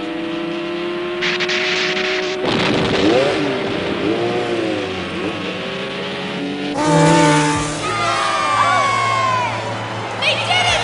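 Racing motorcycle engine held at full throttle, its pitch climbing slowly, under a dramatic music score; partway through the engine gives way to a noisier stretch with sweeping pitch glides.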